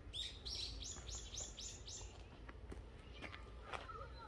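A small songbird singing a quick run of about six high notes, each sliding downward, over the first two seconds. A couple of soft knocks follow near the end.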